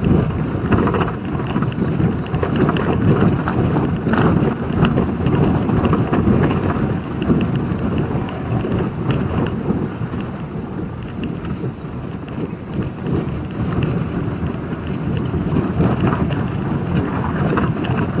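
BMW roadster driving slowly over a cobblestone street, heard from inside the car: an uneven rumble of tyres on stone, with small knocks from the bumps, over the engine.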